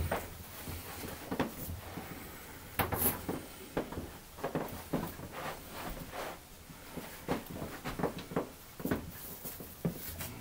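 Large protective-filmed plastic sheet being handled by gloved hands: scattered soft knocks, flexing and rubbing as it is lifted, shifted and set against the front of a display case.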